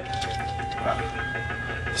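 Steady low electrical hum with a faint constant tone, and a few faint ticks of the plastic model part being handled.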